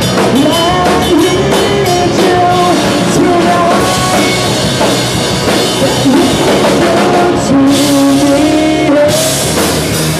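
Live rock band playing at full volume: a drum kit, guitar and a woman singing the melody, with cymbals washing brighter about nine seconds in.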